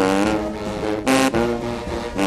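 Brass band music: a run of held brass chords, with a louder chord about a second in.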